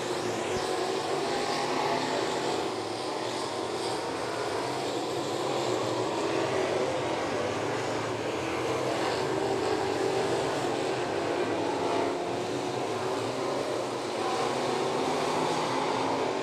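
Sportsman dirt-track race cars running laps on the oval, their engines making a steady, continuous drone.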